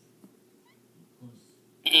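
Near silence with a few faint clicks, then a woman's voice starts speaking loudly near the end in a strained, high cartoon-character impression.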